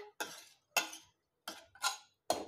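Metal ladle stirring rice, vegetables and water in a pressure cooker, scraping and clinking against the pot in four short strokes.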